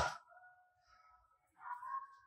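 Near silence after a voice trails off at the start, with only a few faint steady tones in the background.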